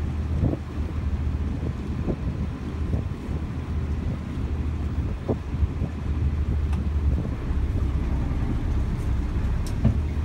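Wind buffeting the microphone: a steady low rumble with a few short gusty thumps.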